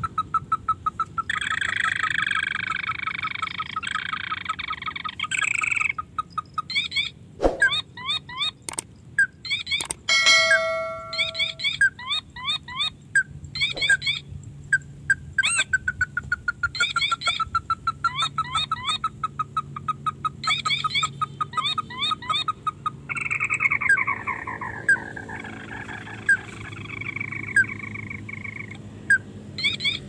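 Crakes (burung tikusan) calling: series of short, rapidly repeated chattering notes. A sharp knock comes about seven seconds in.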